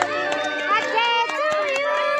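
A group of children's voices at once, several drawn out in long held pitches.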